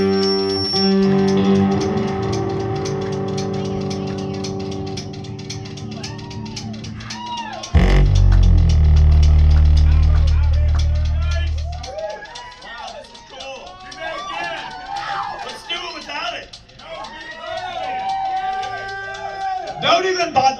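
Live rockabilly band with electric guitar, drums and upright bass letting a chord ring out and slowly fade. About eight seconds in a loud low rumble starts abruptly and lasts about four seconds. Then the music drops away, leaving voices shouting and calling out in the room.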